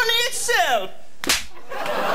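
A man's wordless voice in the first second, then a single sharp slap about a second and a quarter in.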